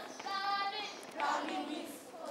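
Children singing an action song, with one long held note followed by shorter sung phrases.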